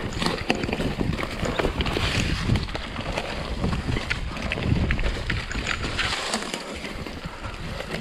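Mountain bike riding downhill over rough dirt and stones: tyres crunching on the trail while the bike rattles and knocks with many quick, irregular clacks over the bumps.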